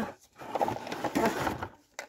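Plastic blister packaging crinkling and rustling as a packaged toothbrush holder is picked up and handled, a dense crackle lasting about a second and a half.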